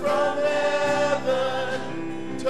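Church choir singing a hymn in long, held notes.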